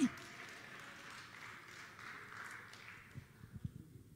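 Faint scattered applause that dies away after about three and a half seconds, with a few soft knocks near the end.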